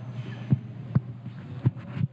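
Three dull, sharp thumps, irregularly spaced about half a second, one second and a second and two-thirds in, over a steady low electrical hum.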